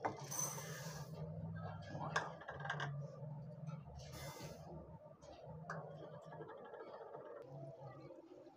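Dry split lentils (toor and masoor dal) poured into a glass bowl, the grains rattling against the glass in two pours of under a second each, near the start and about four seconds in, with a few sharp clinks between them. A low hum runs underneath.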